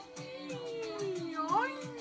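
A girl's long, drawn-out vocal sound falling slowly in pitch, then a short rising vocal sound near the end, with music playing faintly underneath.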